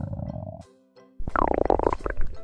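A low rumbling noise that breaks off just under a second in. A moment later comes a young man's loud, drawn-out yell that rises and then falls in pitch.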